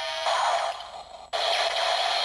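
Kamen Rider Ex-Aid Buggle Driver toy belt playing electronic sound effects and music through its small speaker. A short buzz is followed by a burst that fades, and a new sound starts abruptly about a second in.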